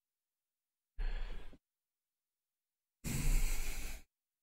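A person breathing out twice near the microphone: a short breath about a second in, then a longer sigh near the end, with dead silence before, between and after.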